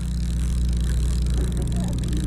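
A boat's engine running with a steady, even low drone, over a background hiss.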